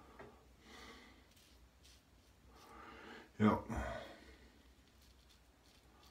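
Mostly quiet, with a man saying one short word, "yep", about three and a half seconds in, and only faint soft noises around it.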